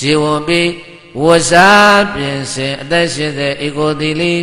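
A Buddhist monk's male voice chanting in a drawn-out, melodic intonation, with a short break about a second in and a long held note just after.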